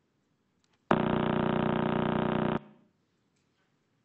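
Radio pulses of the Crab pulsar, a spinning neutron star, converted to sound and played back: a loud, steady buzzing tone that starts abruptly about a second in and cuts off after nearly two seconds.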